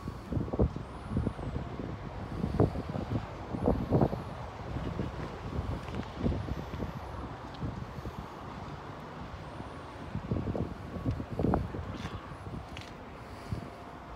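Wind buffeting the microphone outdoors, heard as irregular low rumbling gusts and thumps.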